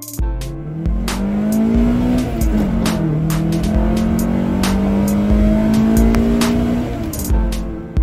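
Honda Accord's H22A four-cylinder engine accelerating: its pitch climbs for about two seconds, drops at an upshift about three seconds in, then climbs slowly again before fading near the end. Music with a steady beat plays over it.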